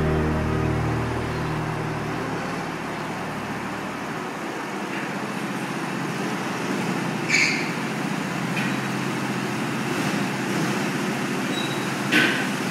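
Rock music fading out in the first couple of seconds, then a steady mechanical drone of go-kart engines running, with a brief high-pitched squeal about seven seconds in.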